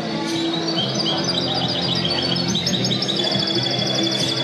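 Background music with held low notes, and a small songbird singing rapid, repeated high trills over it.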